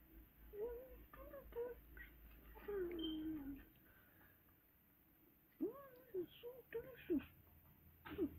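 A person's voice making short wordless sounds in a string, with one longer falling sound about three seconds in and a few more near the end.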